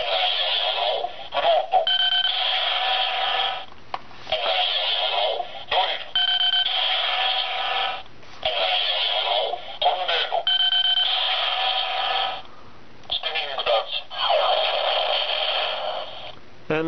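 Bandai DX Chalice Rouzer toy belt buckle playing its electronic sounds through its small, tinny speaker. Three card scans (Tornado, Drill, Float) each give a short high beep, a noisy effect and a recorded voice calling the card. Near the end comes the longer announcement of the three-card combo, Spinning Dance.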